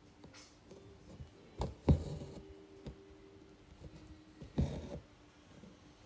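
Embroidery needle and thread worked through fabric held taut in a hoop: a few soft thumps as the needle punches through and the thread is drawn up, a pair about two seconds in and another later.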